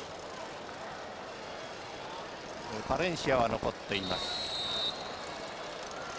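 Referee's whistle: one steady, high-pitched blast about a second long, starting about four seconds in, over the steady murmur of a stadium crowd.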